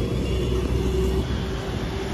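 A steady, low vehicle rumble with a faint steady hum over it.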